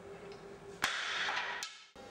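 A streetboard lands hard on the concrete warehouse floor: a sharp crack about a second in, then the wheels rolling loudly for most of a second before the sound cuts off abruptly. A low steady hum lies under it beforehand.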